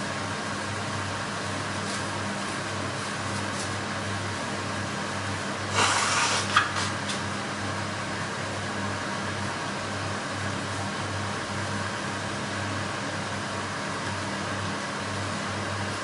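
A person blowing their nose into a paper tissue: one short blow about six seconds in, over a steady low hum and hiss.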